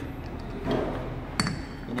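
A single sharp metallic clink with a brief ring, about one and a half seconds in, as metal pump parts are handled on a workbench.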